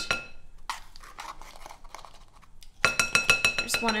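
Light taps, then a quick run of about ten clinks near the end, each leaving a short glassy ring: a measuring spoon knocking baking soda into a glass mixing bowl.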